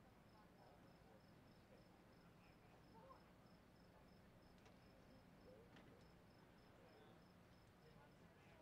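Near silence: faint outdoor night ambience with a cricket chirping steadily, about three chirps a second, over a low hum.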